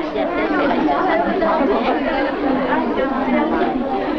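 Many young children and women talking at once: steady, overlapping chatter of a roomful of voices with no single speaker standing out.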